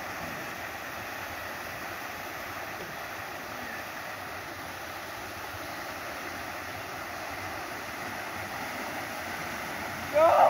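Small waterfall pouring over granite slabs into a pool: a steady, unbroken rush of water.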